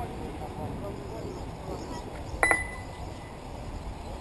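Faint murmur of voices over a low outdoor rumble. About two and a half seconds in comes one sharp metallic clink that rings briefly.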